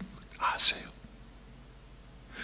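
A man's voice, soft and breathy, almost a whisper, for a moment about half a second in, then quiet room tone.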